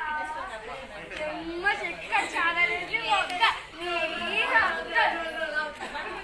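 Close voices of people talking and chattering, with the loudest stretch in the middle.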